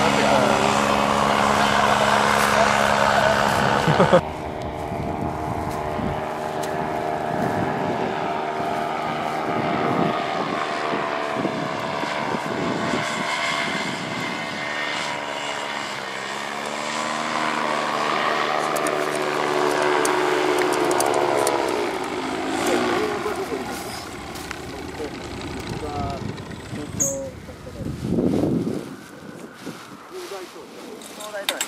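A paramotor's backpack engine and propeller running overhead with a steady buzzing note. The sound breaks off abruptly about four seconds in and resumes quieter. Around the middle the pitch dips and then climbs again, and in the last third the engine fades away as the pilot throttles back to come in and land.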